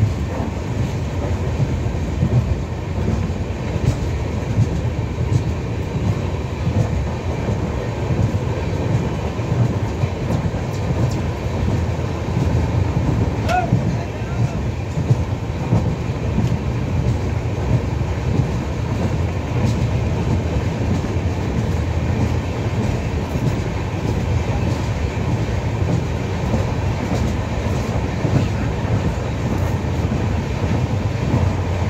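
Passenger train running along the track, heard from inside the coach at a barred window: a steady low rumble of the wheels and carriage with faint scattered clicks.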